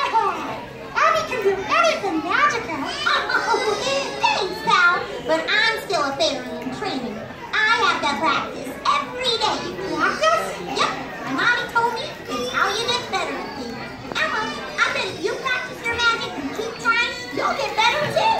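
Many young children's voices in an audience, talking and calling out over one another continuously, with music underneath.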